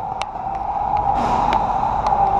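Handling noise from a hand gripping the camera close to its microphone: a low rubbing rumble with a few sharp clicks, over a steady high hum.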